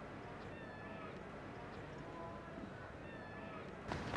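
Faint cricket-ground ambience: a low, steady background with scattered short, high calls drifting in pitch.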